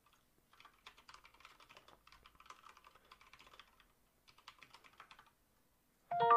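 Faint typing on a computer keyboard: a quick run of keystrokes, a short pause, then a few more keystrokes.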